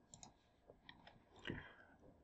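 Near silence with a few faint computer mouse clicks, and one short faint sound about one and a half seconds in.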